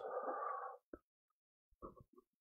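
A person's soft breath, under a second long, followed by two faint clicks.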